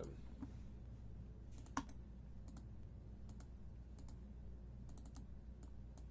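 Faint, scattered computer keyboard and mouse clicks, some in pairs, the clearest about two seconds in, over a low steady hum: the sound of copying and pasting a list between a web page and a spreadsheet.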